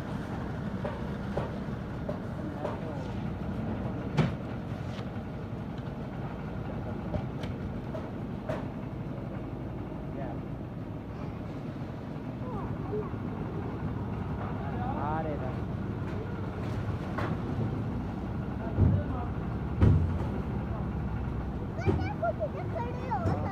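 Concrete mixer's engine running steadily, with scattered sharp knocks and two heavier thumps near the end.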